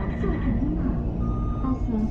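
Crowded airport arrivals hall: many people talking at once over a low steady rumble. A steady high electronic tone runs under it, and short electronic beeps come in during the second half.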